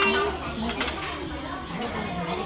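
Metal spoon and fork clinking and scraping on a plate, with one sharp clink about a second in, over background voices.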